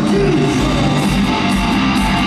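Hard rock band playing live through a stadium PA: electric guitars strumming over bass and a steady drum beat with regular cymbal hits, no singing.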